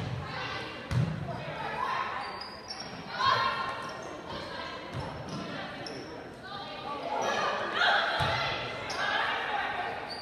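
Volleyball thumps echoing in a gym, sharp hits about a second in, around five seconds and a little after eight seconds, amid players' calls and spectators' voices.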